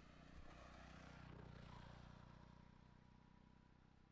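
Near silence with a faint, low engine drone from a distant motor vehicle that swells about a second in and fades toward the end.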